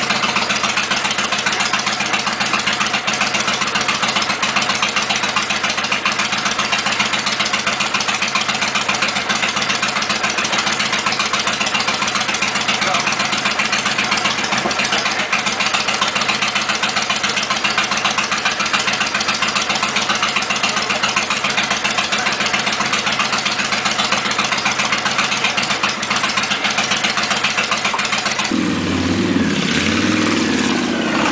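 Cruiser motorcycle with long chrome drag pipes idling loudly and steadily, with a fast even pulse. Near the end the sound changes as the bike pulls away.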